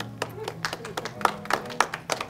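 Recorded music playing over room speakers from a performance video on a wall screen, with a run of sharp clicks or taps scattered through it, several a second.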